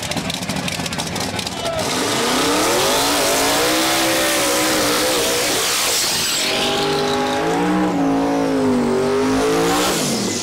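Red Camaro drag car's engine crackling rapidly with flames from the exhaust. It then revs hard through a burnout, in two long pulls whose pitch climbs and falls while the rear tires spin and smoke.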